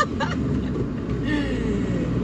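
Steady engine and road noise of a motorhome heard from inside its cab while driving.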